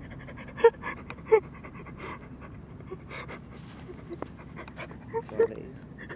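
Short, irregular breathy puffs, like panting, the strongest about two-thirds of a second and a second and a half in, with a few more near the end.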